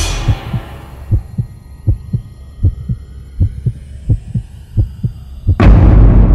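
Heartbeat sound effect: paired low thuds, lub-dub, at about eighty beats a minute over a faint hum with thin high sweeping tones. Near the end a loud boom hits and rings out.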